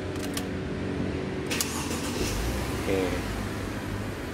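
The Mercedes-Benz W211 E280's ignition key is turned, making sharp clicks near the start and about a second and a half in, over a steady low hum. A brief low rumble follows about two seconds in.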